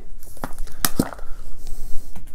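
Cardboard perfume tube being handled and opened to take the bottle out: a few sharp knocks and scrapes around the middle, with crinkly rustling of the packaging.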